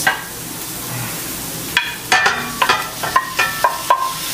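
Sliced onions frying with a steady sizzle in a pot. From about two seconds in, raw meat chunks are scraped off a plate into the pot with a wooden spoon, giving a quick run of sharp knocks and clinks.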